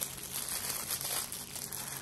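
Crinkling of a thin clear plastic packaging bag as hands pull it open, in irregular rustles.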